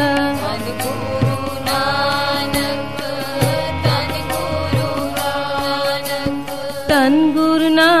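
Sikh kirtan music, a harmonium playing held chords with tabla strokes underneath, in an instrumental passage between sung lines. Near the end the singing of the refrain comes back in.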